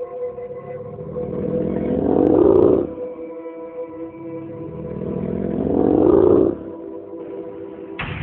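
Dramatic film score: a sustained synth drone with two swelling whooshes that build for about two seconds each and cut off abruptly.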